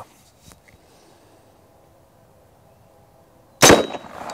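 AirForce Texan .45-calibre big-bore pre-charged air rifle firing a single round ball: one loud, sharp shot about three and a half seconds in, with a brief thin ring after it.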